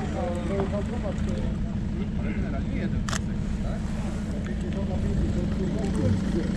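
A motor running steadily with a low, rapidly pulsing drone, under faint voices. A single sharp click about three seconds in.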